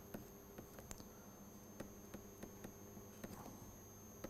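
Near silence: a faint steady electrical hum and high whine, with light, irregular ticks of a stylus writing on a tablet screen.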